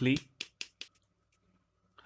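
A few short, light clicks and scrapes in the first second as a small tube of quick adhesive is twisted open by hand.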